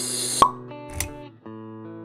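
Logo-intro music with sound effects: a hiss swells and ends in a sharp pop less than half a second in, a smaller click follows about a second in, and sustained musical notes carry on underneath.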